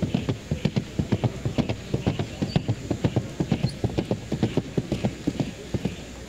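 Hoofbeats of Colombian trote mares being ridden at the trot, landing in a fast, even rhythm of several beats a second.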